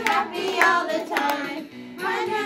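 A few sharp hand claps, irregularly spaced, over a children's song being sung.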